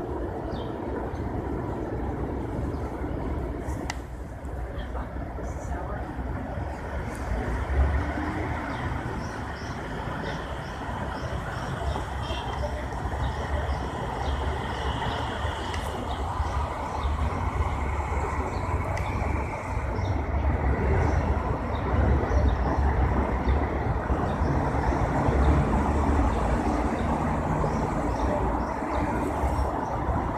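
Steady city street noise of traffic, a continuous low rumble that grows somewhat louder in the second half.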